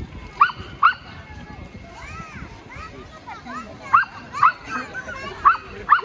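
A small dog barking, short sharp yaps that come in pairs three times, over faint chatter of people nearby.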